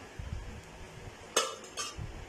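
A perforated metal skimmer spoon stirring whole spices in ghee in a metal karahi, with two sharp metal clinks against the pan about half a second apart near the end.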